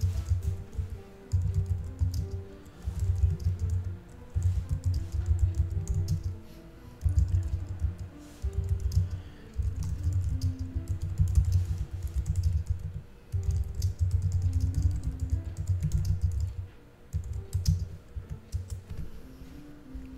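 Typing on a computer keyboard in bursts of one to two seconds with short pauses between, over faint background music.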